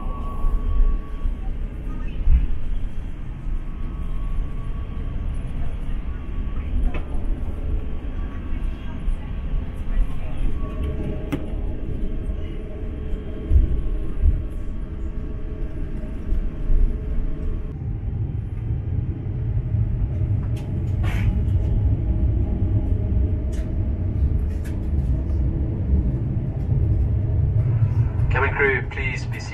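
Airliner cabin noise of an Airbus A350 taxiing: a steady low rumble from its Rolls-Royce Trent XWB engines and rolling gear, growing heavier about two-thirds of the way through, with a few light clicks.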